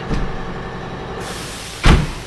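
Tailgate of a 2024 Ford Ranger pickup being swung up and closed, ending in one loud slam just before the end, after a light knock at the start.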